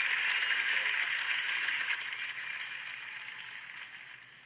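A handheld rattle shaken steadily, giving a grainy hiss that fades out toward the end.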